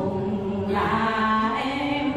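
Unaccompanied quan họ folk singing by female voices: long held notes that bend slowly in pitch, sung with no instruments.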